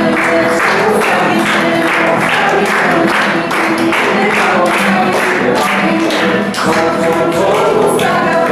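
Upbeat song with a group singing over a steady clapping beat, about two beats a second.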